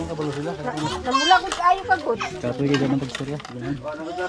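Overlapping chatter of several people's voices talking over one another, with no single clear speaker.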